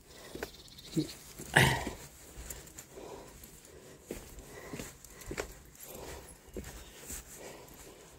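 Footsteps scuffing and clicking on concrete steps, with one short, louder sound about a second and a half in.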